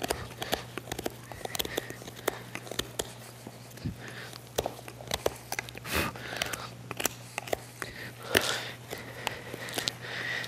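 Hoof nippers crunching and snipping at a horse's overgrown hoof bars, a scattered string of small sharp cracks and clicks as chalky, crumbly horn is pulled loose.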